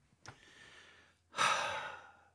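A man's breath with no words: a soft inhale, then a louder sigh out in the second half that fades away.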